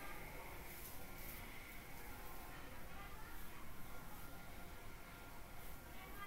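Faint room tone: a low, steady hiss with no distinct sound.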